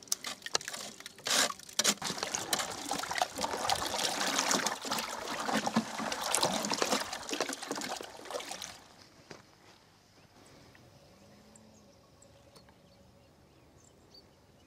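A wooden stick stirring a frothy, compost-dark liquid in a plastic bucket, sloshing and swirling, preceded by a few short scrapes of compost being rubbed through a wire sieve. The stirring stops about nine seconds in.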